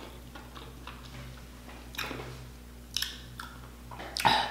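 Faint chewing and mouth clicks from a person eating boiled lobster meat, which the eater finds rubbery. A few soft clicks come about two and three seconds in, over a steady low hum.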